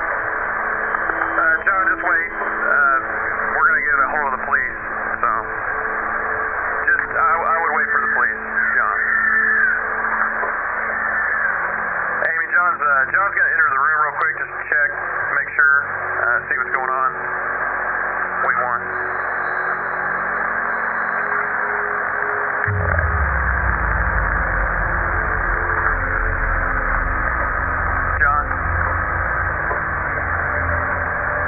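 Two-way radio chatter: voices coming through a walkie-talkie over steady static. About 23 seconds in, a low rumble starts and keeps going.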